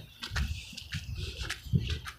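Faint, irregular crunching of fresh snow underfoot, with a low wind rumble on the microphone.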